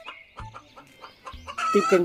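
A rooster crowing, with chickens clucking.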